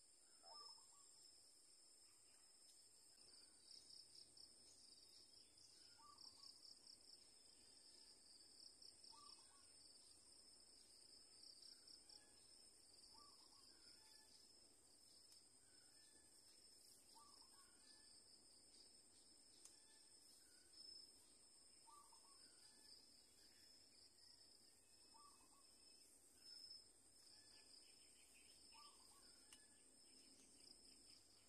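Near silence: faint, steady high-pitched insect trilling, with a short bird call repeating about every three seconds.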